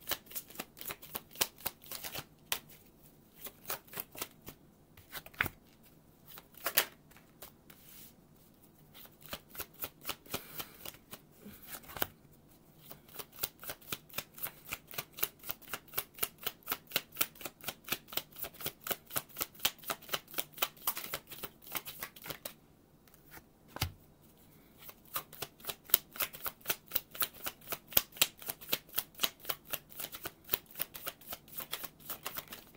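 Tarot deck being shuffled by hand overhand: runs of quick soft card flicks as small packets fall from one hand onto the deck in the other, broken by a few short pauses and a few stronger single taps.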